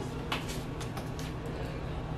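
Hand dredging raw chicken wings in seasoned flour on a paper plate: a few faint soft pats and rustles over a steady low room hum.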